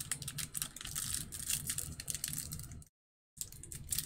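Foil wrapper of a baseball card pack crinkling and crackling as it is handled and torn open by hand, with a brief dropout about three seconds in.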